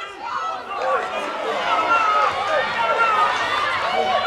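Several voices shouting and calling over one another during a football match, the raised calls of players and spectators rather than conversation.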